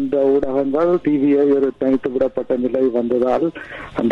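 Speech only: a man talking continuously, with a short pause near the end.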